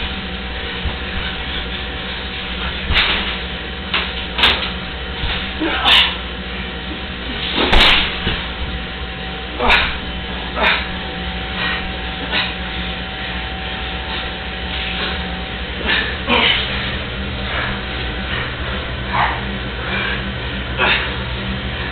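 Scuffling and irregular thumps of two people wrestling on a tiled floor, a dozen or so separate knocks as bodies and feet hit the tiles, over a steady low hum.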